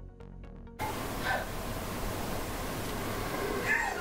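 Background music with a steady beat cuts off abruptly about a second in, giving way to a steady hiss of room noise. Two faint, short pitched sounds come in the hiss, one a little after the cut and one near the end.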